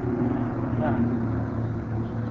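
A man's voice drawing out a hesitation sound on one steady pitch for about a second and a half, over the constant low hum and hiss of an old lecture recording.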